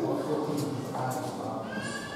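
People talking, off-microphone and indistinct, with a higher-pitched voice near the end.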